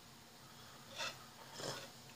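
Quiet drinking noises from a man drinking from a tall glass: one short sound about a second in and a softer, longer one shortly before the end.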